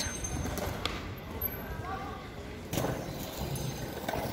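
Outdoor open-air ambience with faint distant voices over a steady low rumble, and a short knock about three seconds in.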